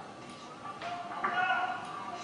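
Indistinct voices echoing in a large hall, with a drawn-out call starting about halfway through, most likely from the crowd or a fighter's corner.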